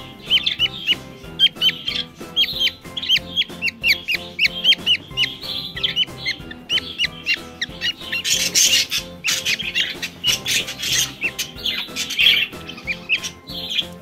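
Budgerigar nestling calling rapidly and repeatedly in short, high chirps, with harsher, louder cries for a few seconds in the middle. This is the normal crying of a chick while a closed ring is worked onto its leg. Faint background music underneath.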